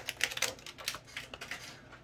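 Rapid, irregular crackling clicks of Pokémon trading-card packaging and cards being handled, densest in the first half second and thinning out: a lot of noise.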